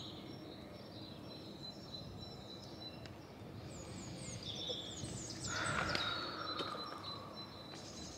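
Small birds chirping and singing over steady outdoor background noise. About five seconds in, a louder sound comes in and slides slowly down in pitch for a second or two.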